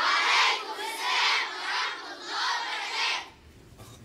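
A class of children shouting a reply in unison: three loud chanted phrases, ending about three seconds in.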